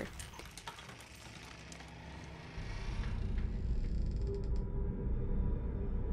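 Horror-film sound design: faint creaks and clicks in a hushed room, then a low, steady rumbling drone comes in suddenly about two and a half seconds in and holds.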